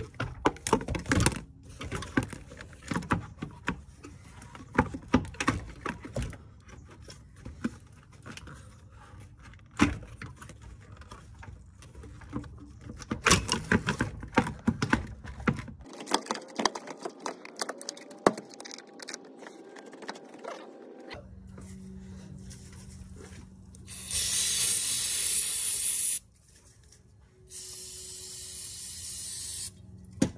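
Clicks and knocks of plastic intake ducting being handled and snapped into place over the first half. Near the end come two long bursts of aerosol spray, about two seconds each.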